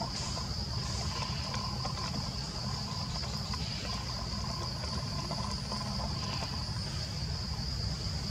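Insects droning steadily on one high-pitched note, over a low steady rumble.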